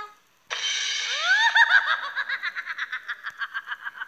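High-pitched giggling that starts suddenly about half a second in, squeals upward, then runs on in quick even pulses about six a second that grow fainter.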